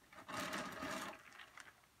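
Clear plastic bag of timothy hay rustling and crinkling as it is picked up and lifted, loudest for about a second, then a few light crackles.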